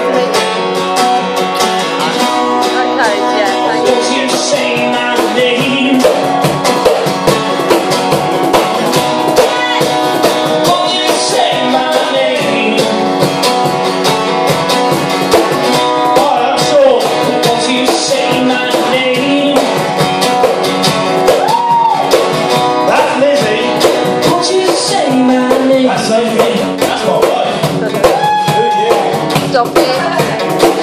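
Live acoustic song: a steel-string acoustic guitar strummed in a steady rhythm with a cajón beaten by hand, and a man singing over them.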